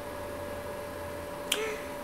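A low, steady background hum, with one sharp click about one and a half seconds in.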